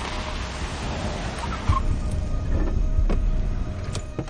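Car engine rumbling low with a hiss of tyre and road noise that dies away about two seconds in, followed by a few sharp clicks.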